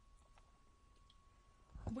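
Very quiet room tone with a faint steady high hum and a few small soft clicks; a woman's voice starts speaking right at the end.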